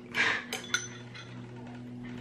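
A metal spoon clinking against a ceramic bowl: two light, ringing clinks about half a second in, just after a brief rush of noise.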